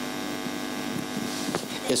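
Steady electrical mains hum from the amplified microphone system, a stack of even, unchanging tones with no voice over it.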